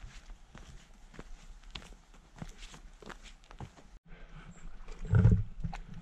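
Footsteps crunching and clicking on a dirt and gravel trail at a walking pace. After a sudden break, a loud low grunt or thump comes a little after five seconds in.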